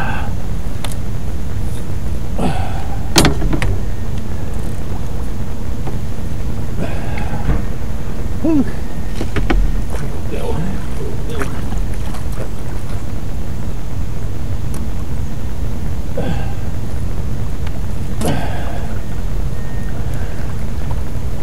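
A man grunting and sighing now and then as he fights a catfish on rod and reel. A steady low rumble runs under it throughout, and a sharp click comes about three seconds in.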